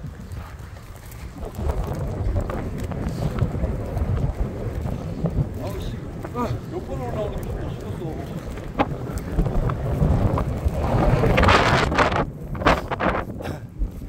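Wind rumbling on a phone microphone, with faint distant voices in the middle. Near the end, footsteps and rustling through dry grass grow louder as the group walks across the field.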